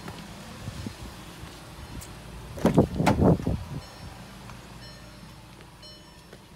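Car engine idling steadily, heard from inside the car. About halfway through comes a loud burst of knocking and rustling that lasts about a second.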